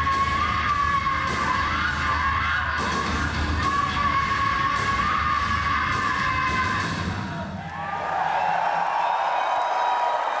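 Live heavy metal band ending a song: sustained distorted guitar under a run of cymbal crashes, which stops about seven and a half seconds in. The concert crowd then cheers and whistles.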